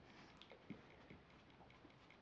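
Near silence with a faint, even ticking, about four or five ticks a second, and a single soft click and knock early on.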